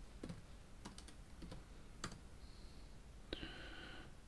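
Faint computer keyboard keystrokes: a handful of separate key presses about half a second apart as a command is typed and entered.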